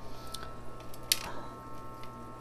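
Faint scraping and crumbling of potting soil being pressed and worked by hand into a ceramic bonsai pot, with one sharp click about a second in, over a steady low hum.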